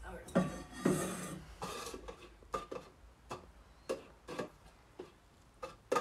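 Plastic cups and a metal pot being set down and shifted on a wooden table: a string of light knocks and clatters, spaced irregularly.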